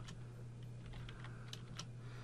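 A few faint keystrokes on a computer keyboard, spaced out, with the last two close together near the end.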